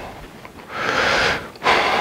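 A man's audible breaths, close to the microphone: a longer breath about a second in and a shorter one near the end.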